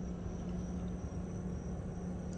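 Outdoor summer ambience: a steady high chirring of crickets, over a low steady hum and a faint low rumble.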